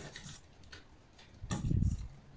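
Handling noise as wires are twisted onto the leads of a plastic bulb holder: faint clicks and rustling, then a dull thump about one and a half seconds in.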